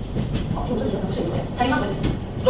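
Fast-forwarded room audio: several women's voices sped up and high-pitched, running over a dense, rattling clatter of movement.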